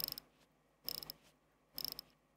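Seagull ST3621 hand-wound movement being wound by the crown: three short runs of quick ratchet clicks, about a second apart, as the mainspring is wound.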